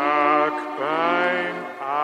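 Orchestral music from a sentimental song's introduction: a melody line of three notes that each slide upward, over held notes in the accompaniment.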